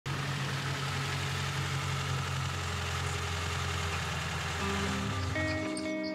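Lada Niva 4x4 rolling slowly up a brick driveway, its engine running steadily with tyre noise, then dying away about five seconds in as the vehicle stops. Music comes in near the end.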